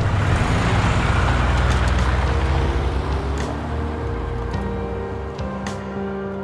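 A car engine and tyres passing and pulling away, swelling briefly and then fading over the first few seconds. Soft background music with held notes comes in underneath and carries on as the car sound dies away.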